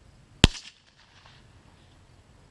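A single sharp crack from a .22 rimfire shot hitting a reactive target, about half a second in, with a short echo trailing off.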